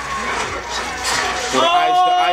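A woman's long, held "ooh" of surprise begins about one and a half seconds in, over faint television sound.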